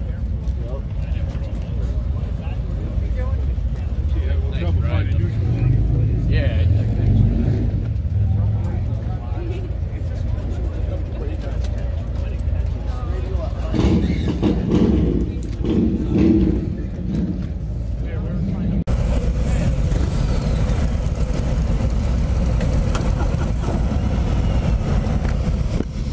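Low, steady rumble of idling Harley-Davidson V-twin motorcycles, with voices around. About 19 s in the sound changes abruptly to the Road King Special's own Milwaukee-Eight 114 V-twin idling, heard from the saddle.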